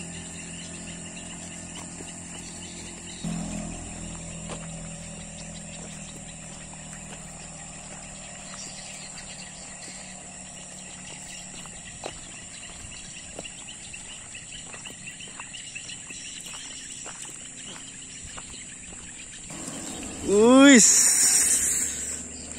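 Insects chirring steadily in the grassland, with the scattered crunch of footsteps on a sandy dirt track. Near the end, a loud voice call rings out.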